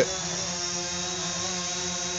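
DJI Phantom 4 Pro quadcopter hovering low and holding position, its four propellers giving a steady hum at an even pitch.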